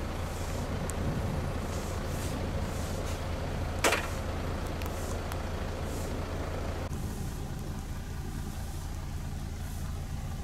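Truck engine running steadily with a low hum, and one brief, sharp, loud noise about four seconds in. The higher background noise drops away about seven seconds in while the low hum carries on.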